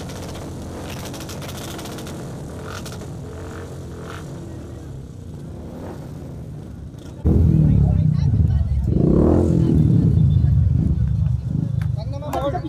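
Street and crowd noise with a few short clicks. About seven seconds in, a much louder low rumble cuts in suddenly and runs on, with voices mixed in.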